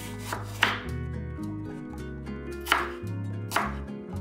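A santoku knife slicing through an apple and striking a wooden cutting board, four sharp cuts at uneven intervals, over steady background music.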